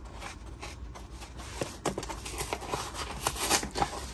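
Fingers picking and tearing at the flap of a cardboard coin box: faint scratchy rubbing of cardboard, with a few small clicks in the second half.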